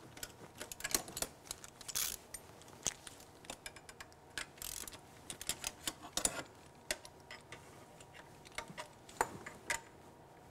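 Irregular metallic clicks and taps of a ratchet-driven wrench being worked on the steel fuel injector line nuts, loosening them a little at a time.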